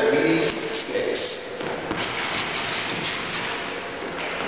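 Sneakered feet stepping, kicking and scuffing on a hardwood floor in Charleston steps, over a steady hiss. A brief voice sounds at the very start.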